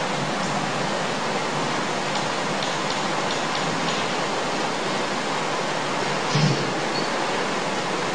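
Steady, even hiss of the recording's background noise, with one faint brief bump about six and a half seconds in.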